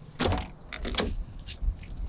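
Rear cargo door of a Ram ProMaster van being unlatched and swung open: a short rattling burst from the handle and latch, then a few sharp clicks.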